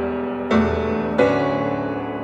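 Slow piano music: sustained chords, each ringing and fading, with a new chord struck about half a second in and another just past a second.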